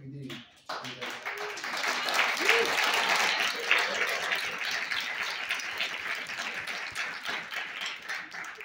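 Audience applauding, starting about a second in and tapering off near the end.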